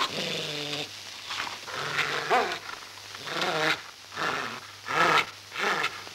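A dog snarling and growling: one long growl, then a run of short, rough bursts, over a steady low hum from the old film soundtrack.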